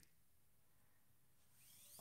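Near silence: room tone, with a faint hiss rising near the end.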